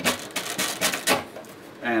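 Velcro fastening tearing apart as an overhead panel is pulled down: a quick run of short ripping crackles over about the first second.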